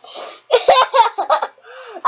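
A four-year-old boy laughing in several quick, breathy bursts.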